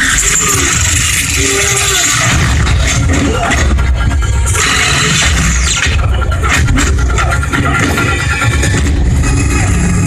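Film fight sound effects: rapid blows, scuffles and impacts of bodies in a close-quarters brawl, following one another without pause, mixed with music.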